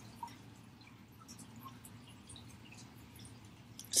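Near silence: faint room tone with a few soft, short ticks.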